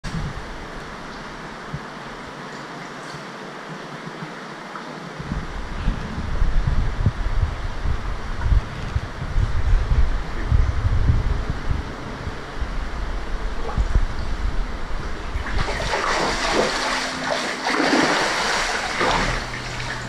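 Water in a large fish pool stirred by a man wading and sweeping a dip net: after a steady hiss for the first few seconds come uneven low sloshes, then loud splashing from about three-quarters of the way in as a cigar shark (mad barb) is netted and thrashes at the surface.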